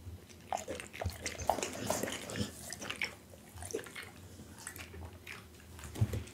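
Pit bull licking and mouthing at a piece of dog jelly close to the microphone: irregular small wet clicks and smacks, without chewing it up.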